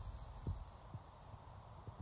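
Quiet room tone with a faint hiss and two soft low taps, about a second and a half apart.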